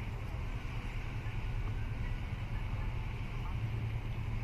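Steady low rumble and hiss of outdoor harbour background noise, with no distinct events.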